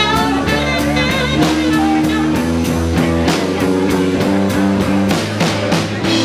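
Live blues band playing an instrumental passage: electric guitars and saxophone over a drum kit keeping a steady beat.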